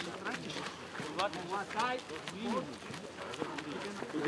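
Footballers running through a warm-up drill on grass, with scattered footfalls and voices calling out across the pitch, including a few short calls in the middle.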